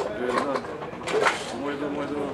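Speech: a man talking.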